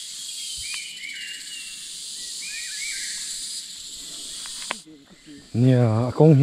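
Outdoor nature ambience: a steady high hiss with a few short chirps, cutting off abruptly near the end.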